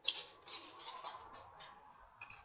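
Faint rustling and scuffing of people moving about, in a few soft, irregular bursts.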